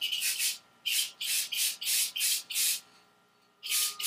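Aerosol spray can of flat clear coat sprayed in a series of short hissing bursts, about two a second, then a pause and one more burst near the end: a test coat.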